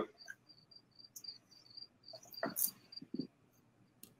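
Faint crickets chirping outdoors: a rapid, even run of short high chirps, several a second, with a few faint rustles or knocks in the second half.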